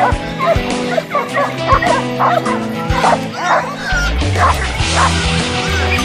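A pack of Maremmano hounds baying in rapid, overlapping yelps, over background music whose bass line comes in about two-thirds of the way through.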